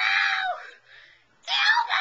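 High-pitched screaming by a child's voice: one scream ends about half a second in, and a second one starts about a second later.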